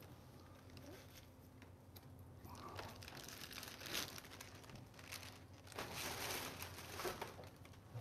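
Faint crinkling and rustling of a plastic bag and folded paper raffle tickets being handled as a number is drawn, coming and going in short spells over a faint steady hum.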